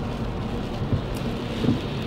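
Steady low rumble and hiss inside a car's cabin: engine and tyre noise of the car being driven.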